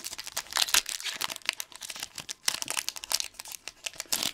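Foil wrapper of a Pokémon TCG booster pack crinkling and tearing as it is opened by hand, a dense, irregular run of crackles.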